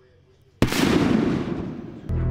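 Transition sound effect: a sudden loud blast about half a second in, which fades away over about a second and a half.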